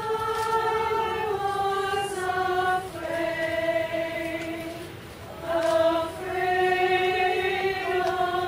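Women's choir singing in long held notes, phrase by phrase, starting at the opening, with short breaths between phrases about three and five and a half seconds in.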